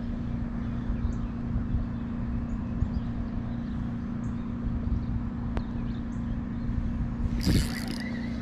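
Wind rumbling on the microphone over a steady low hum. About seven and a half seconds in there is a short burst of handling noise as the camera is moved.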